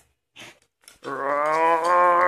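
A single long, steady, low-pitched vocal call held for about a second and a half, starting about a second in.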